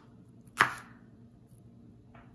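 A chef's knife chopping through green bell pepper strips onto a wooden cutting board: a single sharp chop about half a second in.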